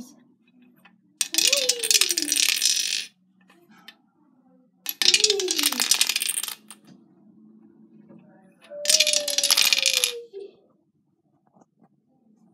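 Three hissing whooshes, each lasting a second and a half to two seconds, with a voice sliding down in pitch inside each: mouth sound effects for small toy figures falling down a sink plughole.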